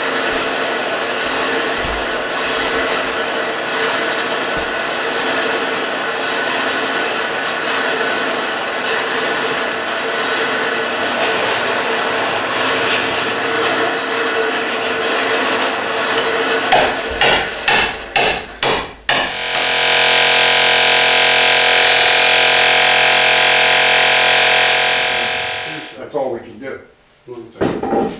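Steel hammer blows on a long metal rod being driven into timber, over a steady background din for about sixteen seconds. Then a power tool starts in a few short spurts and runs loudly and evenly for about six seconds before stopping.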